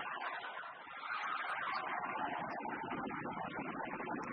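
Arena crowd cheering and beating inflatable thunder sticks at the end of a badminton rally, the noise swelling about a second in and staying loud.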